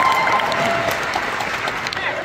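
Audience applauding, with a few whoops and cheers early on, the applause slowly dying away.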